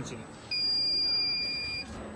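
Electronic buzzer on a TC-6828 motion controller giving one steady, high-pitched beep of a little over a second after a key press, as the controller prompts to re-set the down origin.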